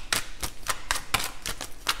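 A tarot deck being shuffled by hand: a rapid, uneven run of sharp papery card slaps and clicks, about five or six a second.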